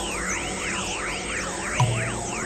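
Experimental electronic music: several overlapping synthesized tones sweeping up and down in pitch in repeated arcs, about two a second, over a steady drone, with a short low hit near the end.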